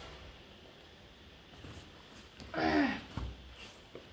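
Quiet room with faint handling of a small cardboard watch box as its lid is pulled off, a brief murmured voice about two and a half seconds in, then a single soft thump.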